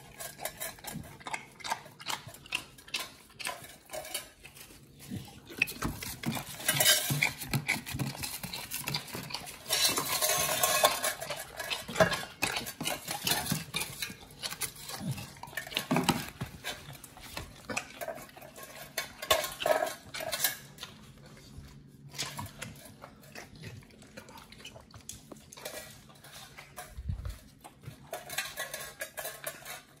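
Pit bulls licking stainless steel divided feeding plates, the tongue and teeth clinking and scraping on the metal in quick irregular bursts. The clatter is heavier in the first half and lighter near the end.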